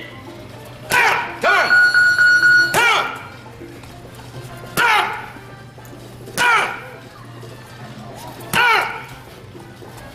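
Single full-power punches landing on a trainer's focus mitts and padded body protector, about six of them one every second and a half to two seconds, each a sharp smack with a short shout.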